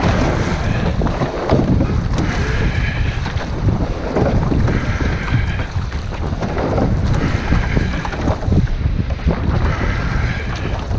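Wind buffeting the microphone over open-sea chop and water washing against a rowing boat's hull. A brighter swish comes back about every two and a half seconds, in time with the oar strokes.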